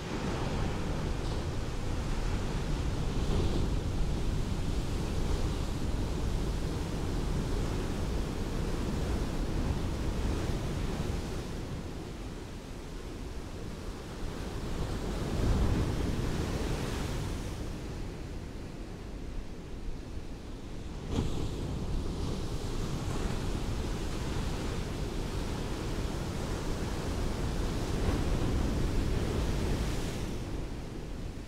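Ocean surf washing onto a beach: a continuous rush of breaking waves that swells and ebbs, loudest about halfway through.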